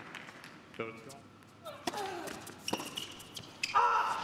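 Tennis ball bounced a few times on the court, sharp separate knocks, with crowd noise and scattered voices in the arena.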